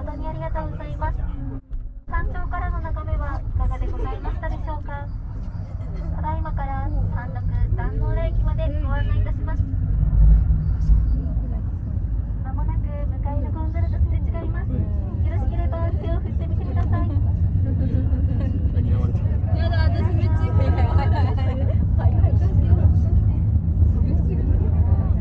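Steady low rumble inside an aerial ropeway cabin as it runs along its cables, swelling briefly about ten seconds in, with people talking over it.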